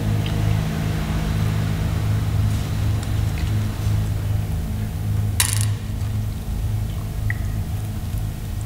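Steady low hum that pulses in level throughout, with a few faint ticks and one sharp clink of glass or crockery about five and a half seconds in.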